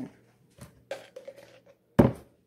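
Faint handling clicks and rustling, then one sharp knock at the very end, as a plastic mayonnaise jar is handled on a wooden countertop.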